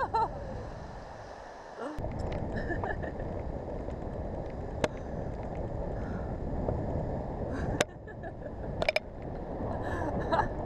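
Rushing wind buffeting the camera microphone as the canyon swing arcs through the air, with a few sharp clicks. The tail of a scream dies away right at the start.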